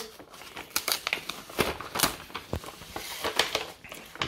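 Brown kraft-paper mailing bag being torn open by hand, the paper rustling and ripping in an irregular run of sharp crackles.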